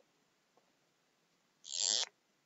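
Near silence, broken near the end by a single short hiss lasting about half a second.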